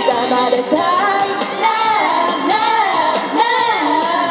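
A pop dance track played over stage speakers, with female voices singing the melody into microphones.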